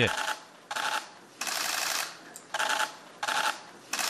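Press cameras' shutters firing in rapid bursts of clicks, about five bursts over a few seconds.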